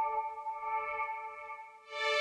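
A sustained chord on a soft synthesized strings patch in GarageBand, played from a MIDI keyboard. It fades a little, and a new, brighter chord comes in near the end.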